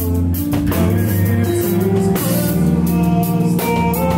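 Rock band playing live: guitars holding sustained chords over a drum kit with regular drum and cymbal hits, picked up by a camera's built-in microphone.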